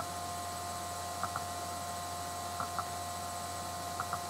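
Steady electrical hum with a few faint light ticks, a pair a little over a second in and another pair near three seconds.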